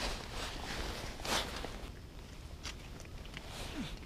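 Quiet rustling and handling noises of clothing and an ice-fishing rod being moved, with one louder scrape about a second in and a few light ticks near the end.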